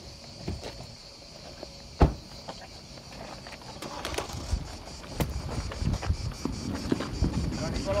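A car door shutting with one loud thud about two seconds in, followed by footsteps, shuffling and low voices of a small crowd of reporters, against a steady high-pitched buzz.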